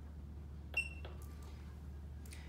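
Meike Palm Bladder Scanner 4.1 giving one short high beep as its pre-scan button is pressed, followed by a faint click.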